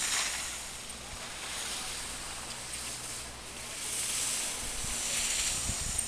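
Skis scraping and hissing across packed snow through carved turns, swelling and fading every couple of seconds. Wind rumbles on the microphone near the end.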